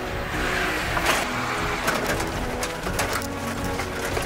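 Military trucks driving on a dirt course, their engines running under background music.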